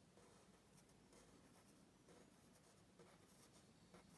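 Very faint scratching of a coloured pencil drawing short strokes on paper.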